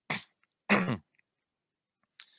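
A man clearing his throat in two short bursts about half a second apart.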